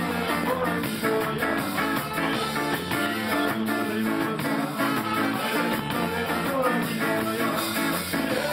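Live ska band playing, guitar over a steady drum beat.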